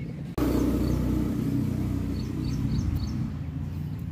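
An engine running steadily, its hum coming in abruptly just after the start, with a few bird chirps over it.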